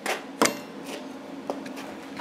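Handling noise: a few light clicks and knocks, the sharpest about half a second in, as a tape measure and a steel pipe are moved on a wooden bench, over a faint steady hum.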